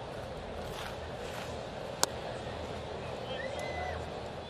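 Steady ballpark crowd murmur, with one sharp pop about halfway through as the pitch smacks into the catcher's mitt.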